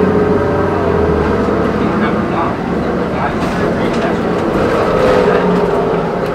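Interior noise of a moving city bus: a steady engine and road drone with a held whine, and a few short rattles.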